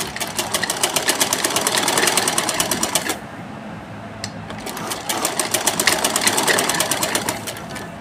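RMI sewing machine stitching a straight seam through cotton fabric: a fast, even run of needle-and-mechanism clicks for about three seconds, a pause of about two seconds, then a second run that tails off just before the end.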